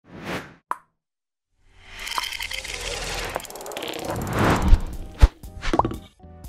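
Sound effects of an animated logo intro: a short whoosh and a pop, then a swelling noisy riser that builds for about three seconds, and a sharp hit followed by a quick rising pop near the end.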